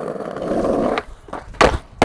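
Skateboard wheels rolling over brick paving, a rough steady rumble that stops about a second in. About one and a half seconds in comes a loud clack as the board slams down on concrete when the rider bails a trick.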